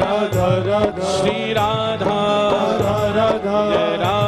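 Live devotional bhajan music with harmonium, tabla and bamboo flute playing in a steady rhythm.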